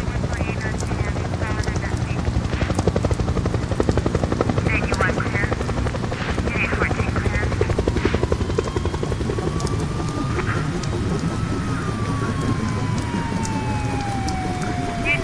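Helicopter rotor chopping steadily, with a siren that slowly rises in pitch and then falls away in the second half, heard as the street-ambience sound effects opening a hip-hop track.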